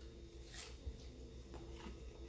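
Faint, soft chewing of a bite of panko-breaded fried broccoli cheese ball, over a steady low electrical hum in a quiet room.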